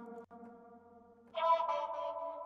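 Output Exhale vocal-engine loops playing from Kontakt as presets are switched. One pitched, processed vocal sound fades out and briefly cuts out, then a new, brighter sustained vocal loop starts about a second and a third in.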